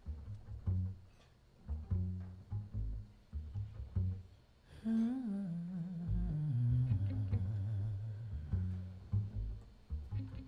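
Upright double bass playing sparse plucked low notes, joined about halfway through by a low wordless hummed vocal line that wavers and slides down in steps before the bass carries on alone.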